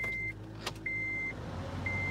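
A car's electronic warning chime sounding in even beeps about once a second, over the low hum of the car's running engine; a single sharp click comes about halfway through.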